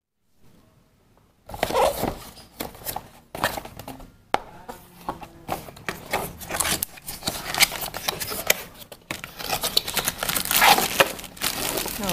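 Packaging being handled by hand: after about a second and a half of near silence, a cardboard box is opened and its contents slid out, with irregular scrapes, taps and clicks and the crinkling of a plastic bag.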